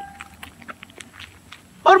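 Faint footsteps of a man marching on asphalt in foot drill, soft scuffs a few times a second, cut across near the end by a loud shouted drill command.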